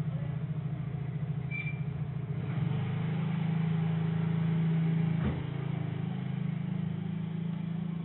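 BMW E36's M43 four-cylinder engine idling, a low hum with an uneven beat. The note grows louder and steadier about two and a half seconds in. A single sharp click comes a little past the middle, after which the level drops slightly.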